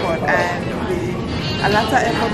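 A woman's voice close to the microphone making drawn-out, wavering vocal sounds without clear words, over the steady background noise of a busy airport concourse.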